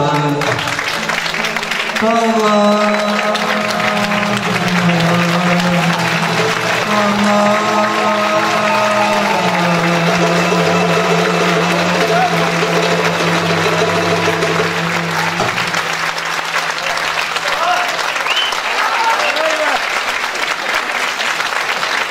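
Audience applauding, the clapping heard throughout. Over it, the song's last long-held notes from the singer and the ensemble step downward and stop about fifteen seconds in, and the clapping goes on after them.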